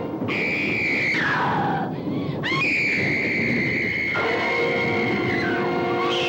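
A woman screaming in terror, high-pitched, twice: a short scream that slides down in pitch at its end, then after a brief break a long held scream. Both sound over sustained music chords.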